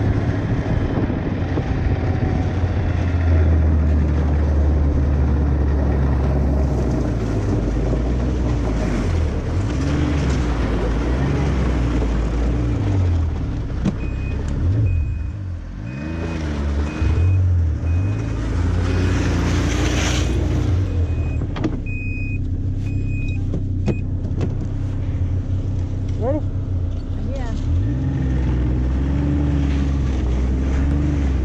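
Snowmobile engine running under way. Its pitch rises and falls with the throttle and dips briefly near the middle.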